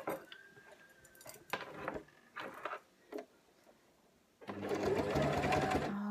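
After a few brief sounds, a Brother electric sewing machine starts about four and a half seconds in and runs steadily, stitching a folded hem in poly-cotton fabric.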